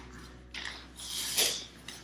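Paper and plastic food packets rustling and crinkling as they are handled, in a couple of short bursts.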